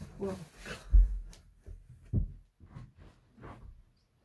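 Two dull low thumps, one about a second in and another a little after two seconds, followed by faint scattered shuffling.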